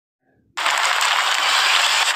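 A steady rushing hiss that starts abruptly about half a second in.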